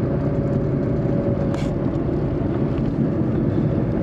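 Fiat Cinquecento heard from inside the cabin while driving along a street: a steady low rumble of engine and road noise.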